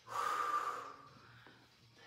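A woman's single hard breath out, just under a second long, near the start, as she exerts herself in a squat.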